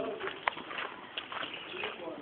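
A bird calling, with a sharp click about a quarter of the way in.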